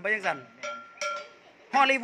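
Two light metallic pings from a drumstick tapping metal on a drum kit, about half a second apart, each ringing briefly with a clear bell-like tone.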